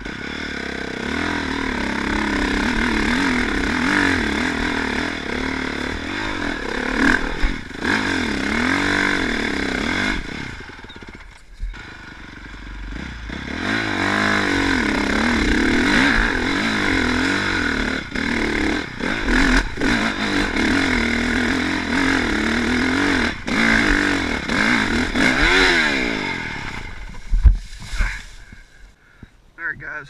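Honda dirt bike engine revving up and down as it is ridden along a rough wooded trail, the throttle opening and closing again and again, with a short lull about a third of the way in. A loud thump comes near the end.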